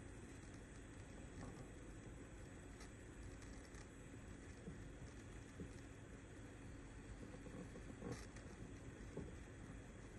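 Near silence: faint room tone with a few soft, brief ticks, the clearest of them about eight seconds in.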